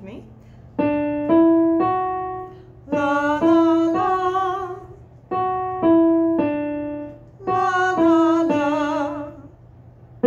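Electronic keyboard playing a rising three-note pattern, then a woman singing the same three notes back on "la" over the keys. This happens twice: a tonal-memory ear-training exercise.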